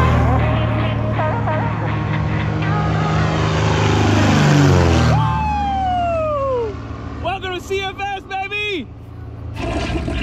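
Small propeller plane passing low overhead, its engine drone dropping in pitch as it goes by about four to five seconds in. In the last few seconds a person's voice calls out in wavering whoops.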